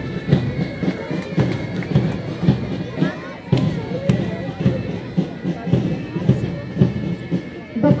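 A marching band playing a march, its drums beating about twice a second, over the chatter of a crowd.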